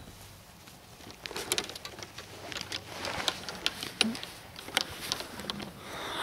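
A sharp click right at the start, then a run of irregular clicks, knocks and rustles that grow louder, as the camcorder is picked up and carried over grass.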